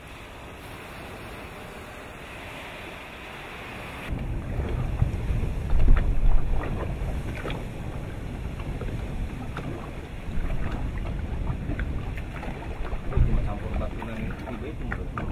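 Faint, steady hiss of wind and sea. About four seconds in, this gives way to a loud, uneven low rumble full of sharp cracks and crackling from a volcanic eruption at the water's edge, where ash and steam billow up. Wind buffets the microphone throughout, and the rumble peaks twice.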